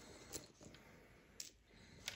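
Near silence, with a couple of faint clicks from small game pieces shifting in a hand.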